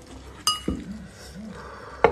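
A metal knife clinks once against the dish with a brief high ring, followed by a soft low thump.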